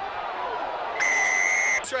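Rugby referee's whistle: one steady, shrill blast of just under a second, starting about halfway in and cutting off sharply, stopping play. Crowd noise runs underneath.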